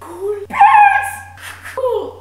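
A young woman making high-pitched, wordless vocal noises in a silly voice: a loud squeal about half a second in, then a shorter call whose pitch falls near the end.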